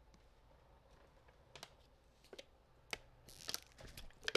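Faint, scattered clicks of typing on a computer keyboard, a few keystrokes over the last couple of seconds, with a short rustle near the end.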